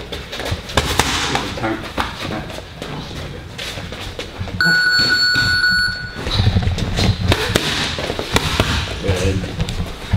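Boxing gloves smacking focus mitts in quick combinations, a run of sharp slaps. About halfway through, a steady electronic beep from the gym's round timer sounds for about a second and a half.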